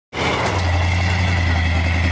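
Pickup truck engine idling with a steady low hum and a faint thin whine above it.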